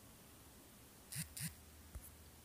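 Quiet room tone with two brief soft clicks about a second in, a quarter second apart, and a fainter tick near the end.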